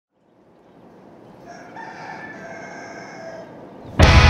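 A rooster crowing once, one drawn-out call of about two seconds, over faint barn background noise that fades in from silence.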